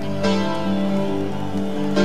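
Live rock band playing sustained guitar chords, with a new chord struck about a quarter second in and another at the end.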